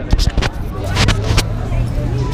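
City street traffic: a motor vehicle's engine hums steadily from about a second in, with several sharp knocks in the first second and a half and crowd voices around.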